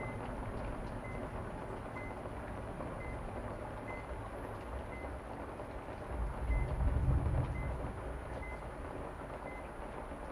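Dark, low rumbling drone that swells louder about six to eight seconds in. Over it, a faint short beep from a patient monitor repeats about once a second.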